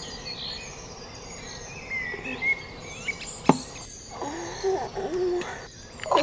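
Forest ambience of birds chirping over a faint insect hum, with one sharp click about three and a half seconds in.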